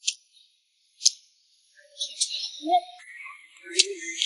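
Close-miked chewing: sharp, wet mouth clicks about a second apart, then a run of softer smacking and more clicks.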